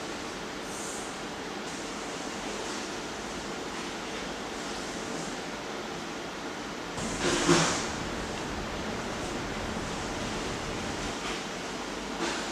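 Steady hissing noise, with one louder rushing swell about seven seconds in.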